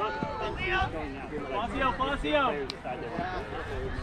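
Voices of players and sideline spectators calling out across an open grass field, several at once and none close by, with one brief click near the middle.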